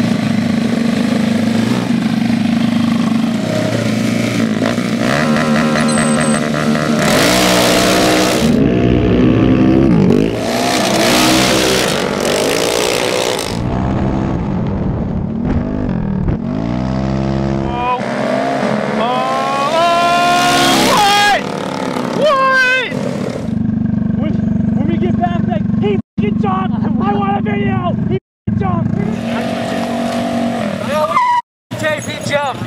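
Small single-cylinder scooter and mini-bike engines at a street drag race: steady running at the start line, revving, and two long hissing bursts, then runs with the engine pitch rising sharply several times as the bikes accelerate away.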